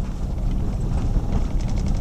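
Jeep WK2 Grand Cherokee rolling slowly over a gravel road, heard inside the cabin: a steady low rumble of tyres and drivetrain, with a few light clicks of gravel under the tyres.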